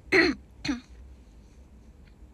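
A woman clearing her throat: two short bursts about half a second apart, the first louder.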